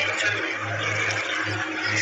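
A steady rushing hiss over a low hum, with no speech.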